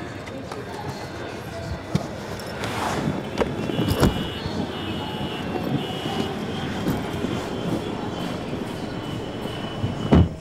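A person getting into a car: rustling and shuffling over a steady background rumble, with a sharp knock about four seconds in and an on-off high beeping for a couple of seconds after it.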